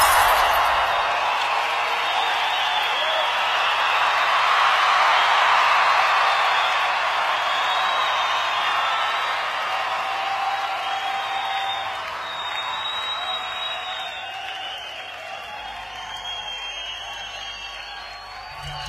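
Crowd cheering and applause from a recording, a steady wash of noise that slowly fades away.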